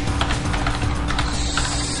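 Computer keyboard being typed on: a quick run of keystroke clicks as a command is entered, over a steady low hum.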